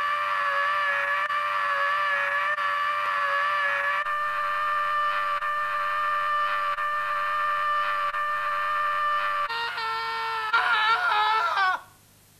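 A man's long, held scream of pain after a saw cuts into his finger, played for comedy. It is one steady high note that shifts lower and wavers near the end, then cuts off abruptly.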